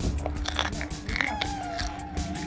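Close-miked chewing of crispy puffed snacks: a rapid run of sharp crunches and crackles.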